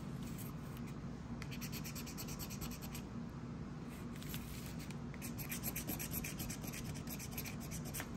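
A lottery scratch-off ticket being scratched, its coating scraped off in quick repeated strokes. There are two runs of scratching, the first about a second and a half in and the second from about five seconds in, with a short pause between them.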